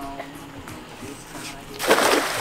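A thrown cast net landing flat on the water near the end, a sudden broad splash as its ring of weights hits the surface all at once.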